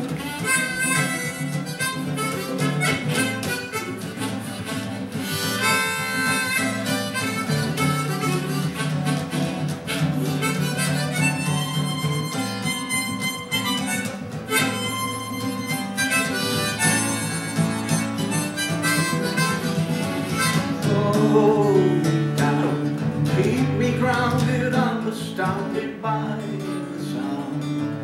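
Harmonica played in a neck rack over steadily strummed acoustic guitar, an instrumental break with no singing. Near the end the harmonica bends and slides its notes.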